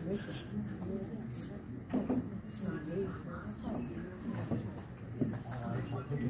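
Indistinct chatter of people in the audience, with a few light knocks.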